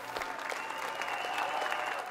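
Audience applause building up as a song ends, a dense patter of many hands clapping, with a steady high tone running through it.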